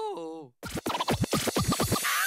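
A held, pitched note from the end of a theme song bends downward and cuts off about half a second in. After a short gap, the next theme opens with turntable scratching: quick back-and-forth pitch sweeps, about six a second.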